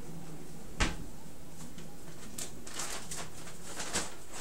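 A single sharp knock about a second in, then a run of soft rustling and scuffing: handling noise as the handheld camera is moved around close over bedding.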